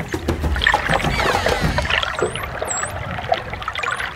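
Water sound effects: bubbling and sloshing with many small clicks, joined in the second half by several short, high swooping whistles.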